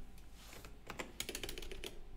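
Typing on a computer keyboard: a run of faint, quick key clicks starting about half a second in.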